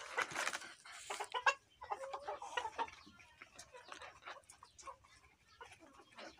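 A flock of Egyptian Fayoumi chickens clucking, with many short clicks and taps scattered among the calls. It is busiest in the first second and a half and thins out after that.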